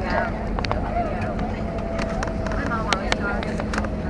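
Cabin noise inside an Airbus A321 rolling along the runway just after touchdown: a steady low rumble with sharp clicks and rattles scattered through it.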